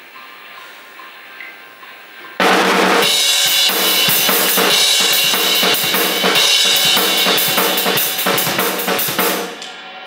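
Acoustic drum kit played hard. After about two and a half seconds of quiet, a sudden loud run of rapid strokes on bass drum, snare and cymbals lasts about seven seconds, then trails off near the end.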